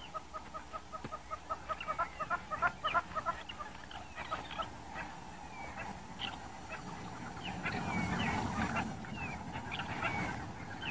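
Spotted hyenas giggling: a fast, even run of short high calls, about six a second, for the first three seconds. After that come scattered higher calls and a rougher, noisier stretch late on. The giggle is typical of hyenas excited or under threat.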